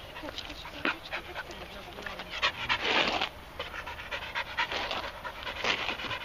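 A black-and-tan shepherd-type dog panting with its tongue out, in quick breaths that are loudest about halfway through.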